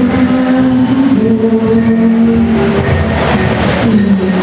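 A girl singing into a handheld microphone over a musical backing track, amplified through a PA system in a large hall; she holds long notes that step up and down in pitch.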